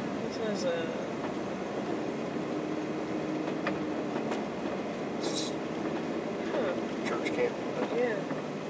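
A car driving slowly along a paved road, heard from inside the cabin: steady engine and tyre noise, with a few faint clicks and a brief hiss about five seconds in.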